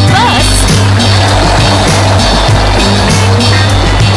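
Children's pop-rock song from the course audio, a sung phrase ending about half a second in, then an instrumental stretch with a steady beat.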